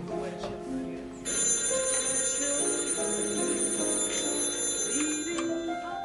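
Telephone bell ringing in one long continuous ring of about four seconds, starting a little over a second in and stopping shortly before the receiver is lifted to answer the call; background music plays under it.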